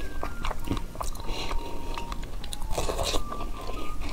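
Close-miked biting and chewing of a fresh strawberry: a quick, irregular string of small crackles and mouth smacks.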